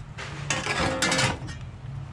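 Sheet-metal gutter pieces clattering and rattling as they are handled, loudest from about half a second to a second and a half in, with a faint metallic ring.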